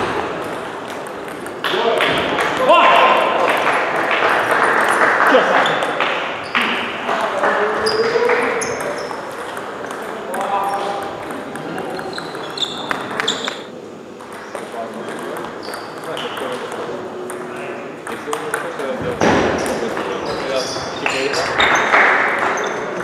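A table tennis ball being struck by rubber-faced rackets and bouncing on the table during rallies: a string of sharp clicks and pings. It plays in a large sports hall with people talking in the background.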